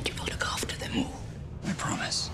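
Soft, near-whispered film dialogue, a few short quiet phrases.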